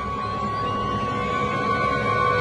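Contemporary orchestral music: a symphony orchestra sustaining high held notes over a dense low layer, slowly growing louder.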